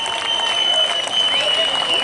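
Festival crowd applauding and cheering as a song ends, with voices calling out over the clapping and a steady high-pitched whine above it all.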